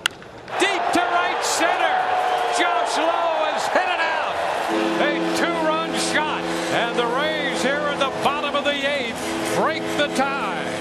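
Crack of the bat on a home-run swing, followed by a stadium crowd cheering loudly. About five seconds in, a steady held musical chord joins over the cheering.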